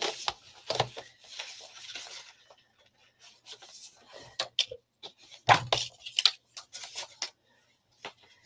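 Sheets of card being pulled out and handled: rubbing and sliding with scattered sharp knocks and clicks, busiest a little past halfway through.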